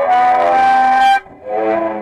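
Electrified violin bowed through a small amplifier, playing held, overlapping notes. The sound cuts off sharply just over a second in, then a new chord swells back.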